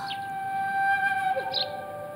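Background score: a slow flute line holding a long note, then stepping down to a lower held note about halfway through.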